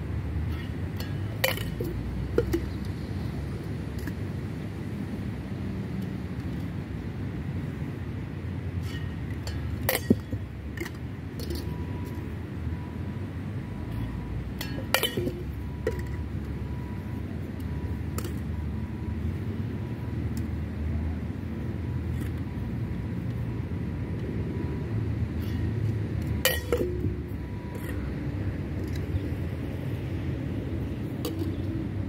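Flair bartending tin and bottle clinking now and then as they are tossed and caught: a handful of sharp metallic clinks that ring briefly, the loudest about ten seconds in, over a steady low rumble.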